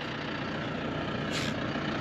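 Diesel tractor engine idling steadily, a low even run with no change in speed.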